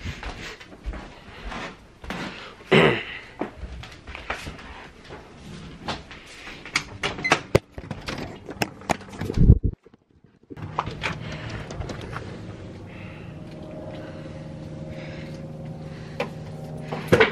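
Hand-held phone handling noise with footsteps and knocks going down stairs, then a steady hum with a few low tones after a brief dropout about ten seconds in.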